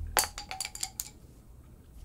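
Pencils clattering after being tossed down: several light clicks and clinks in the first second, over a low hum from the impact just before that fades away.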